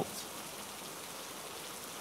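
Steady rain ambience, an even hiss with no distinct drops standing out.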